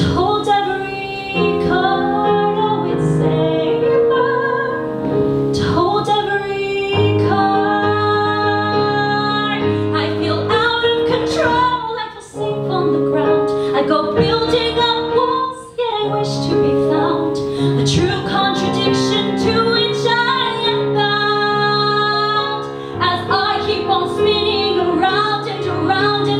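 A woman singing a musical-theatre song live, with piano accompaniment.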